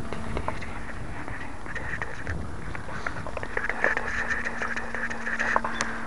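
A distant RC model plane's electric motor and propeller (a 1150kv brushless outrunner turning a 9x4 prop), a faint steady drone as it cruises overhead, under a low rumble of wind on the microphone, with a few light clicks.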